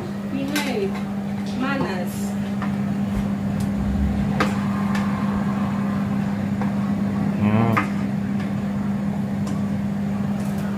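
Steady hum of a kitchen cooker hood's extractor fan over a gas hob, with a few light clicks and knocks of utensils and jars.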